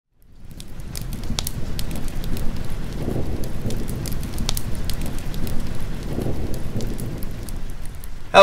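Fireplace fire crackling: a steady low rush with frequent sharp pops and snaps, fading in over the first second.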